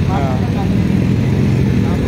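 Busy road traffic, mostly motorcycles, passing close by as a steady low engine rumble.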